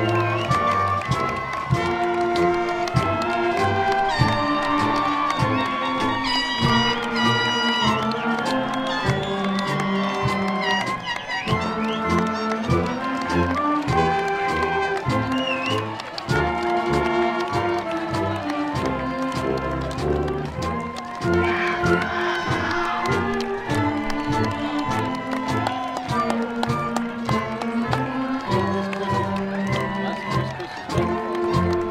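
Instrumental processional music with slow, held notes that change every second or so.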